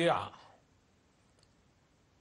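A man's voice finishing a spoken phrase, trailing off about half a second in, followed by a pause of near silence broken by one faint click.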